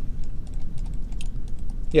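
Light, irregular clicking of a computer keyboard and mouse.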